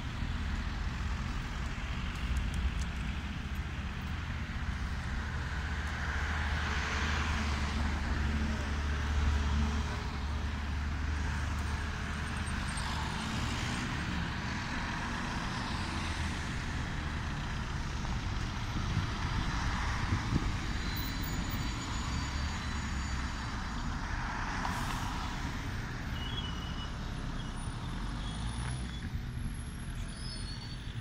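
Road traffic on a city street: several vehicles pass one after another, each swelling and fading, over a constant low rumble.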